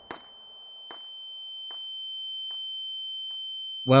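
Steady high-pitched ringing tone, an ear-ringing effect after a gunshot, swelling slowly in loudness. The echo of the shot dies away in the first second, and faint ticks come a little under a second apart.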